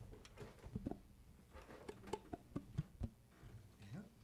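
Faint scattered clicks and taps with a few soft plucked notes from acoustic guitars being handled, over a low steady hum.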